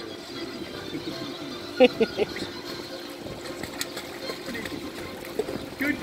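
Pool water sloshing and splashing around a small dog as it is lowered into the water and starts to paddle, over a steady rush of water. A brief voice fragment comes about two seconds in.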